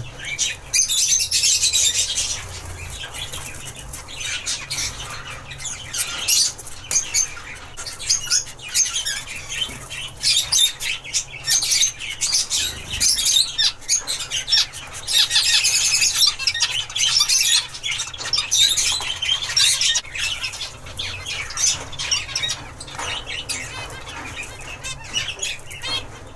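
Zebra finches calling: a busy stream of short, high chirps and calls, thickest in a few stretches of a second or two.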